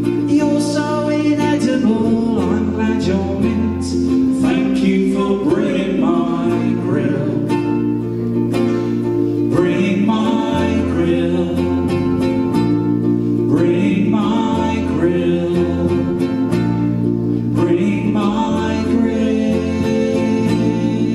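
Live song played on electric bass guitar and ukulele, with singing over it. The bass holds long low notes that change every couple of seconds under the strummed ukulele.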